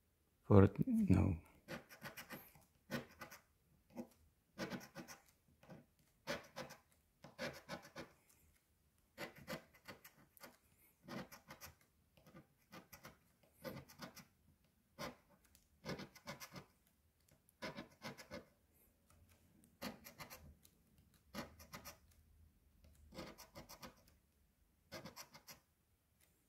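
A coin scratching the coating off a paper scratch-off lottery ticket, in short quiet rubbing strokes about one or two a second with small pauses between spots. One short, louder sound that is pitched like a voice comes near the start.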